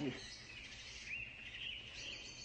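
Faint bird chirps, a few short calls about halfway through, over a steady background hiss.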